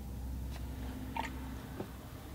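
A quiet room with a steady low hum and a few faint soft clicks, the clearest about a second in.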